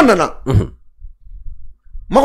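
A man's speech breaks off, then one short throat-clear about half a second in, followed by a pause with only faint low room noise.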